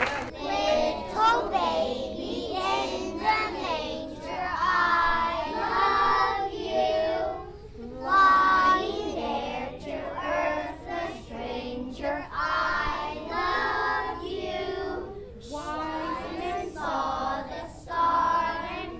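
A group of young children singing a Christmas carol together in unison.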